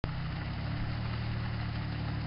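Off-road 4WD engine idling steadily.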